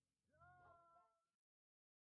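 Near silence, broken about a third of a second in by one faint, short pitched sound that glides up and then holds for under a second.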